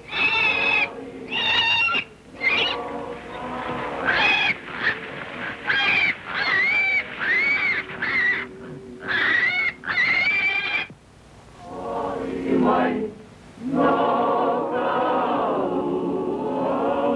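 A string of high-pitched vocal cries, each arching up and falling away, about one a second for the first eleven seconds; then a group of lower voices begins chanting.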